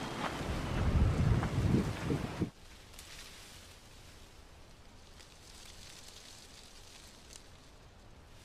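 Wind buffeting the microphone, a loud, gusting low rumble that cuts off abruptly about two and a half seconds in. After that only a faint, steady hiss remains, with a couple of faint ticks.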